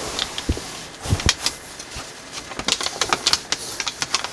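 Thin gold foil origami paper crinkling and crackling as fingers fold it and press down the creases, in irregular clusters of sharp crackles and small taps.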